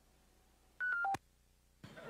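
Phone's call-ended tones: three short beeps stepping down in pitch in quick succession. They signal that the caller on speakerphone has hung up from the other end. Voices or laughter start up just before the end.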